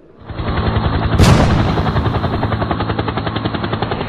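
A rapid, even string of gunfire-like cracks, like a machine gun firing, with one louder bang about a second in.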